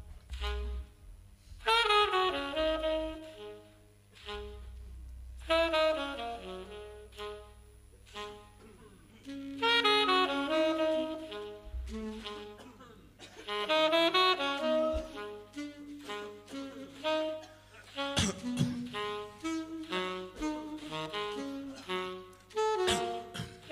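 Free-improvised jazz led by tenor and alto saxophones: loud held notes come in together about every four seconds and fade away over low bass notes. The playing grows busier, with sharp percussive hits, near the end.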